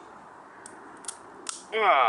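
Steel cable lock being snipped with hand-held side cutters: three sharp clicks about half a second apart as the cable's wire strands snap.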